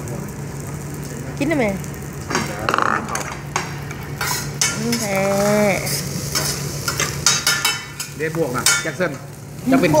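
Fried rice sizzling on a teppanyaki griddle, with a run of sharp metal clicks and clinks from utensils and dishes through the middle.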